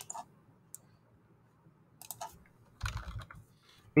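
Computer keyboard being typed on, with a single sharp click about a second in, a few keystrokes about two seconds in and a quicker run of keystrokes near the end, typical of entering a file name to find it.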